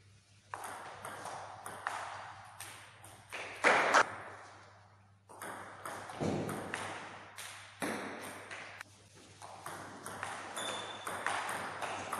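Table tennis rallies: a celluloid ball clicking off rubber-faced bats and the table top in an irregular series of sharp pings, each with a short ringing tail in the hall. One hit about four seconds in is the loudest.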